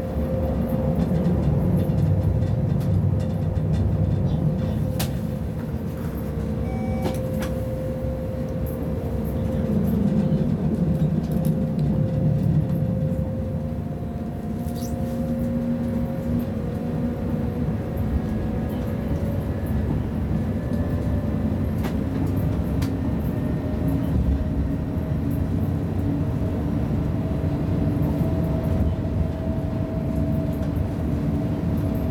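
ÖBB class 1016 Taurus electric locomotive running, heard from inside its cab. A steady rumble of the wheels on the rails underlies a whine from the electric drive, which slowly rises in pitch as the train gathers speed. A few sharp clicks are heard.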